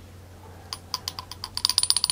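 Fountain pen ink converter's piston knob being twisted by hand to push the leftover ink back into the bottle: small ratchet-like clicks that start sparse and, about a second and a half in, become a fast even run of clicks with a faint metallic ring.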